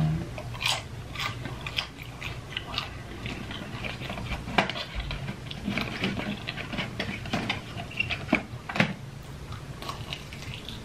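A person chewing a breaded fried mozzarella stick close to the microphone: irregular wet crunches and mouth clicks, with two sharper crunches about halfway and near the end.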